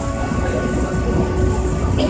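Passenger ferry's engine running with a steady low rumble, heard from the open deck.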